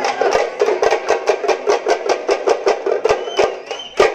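Drums beaten in a fast, steady rhythm of about six or seven strokes a second. A high rising call sounds twice near the end.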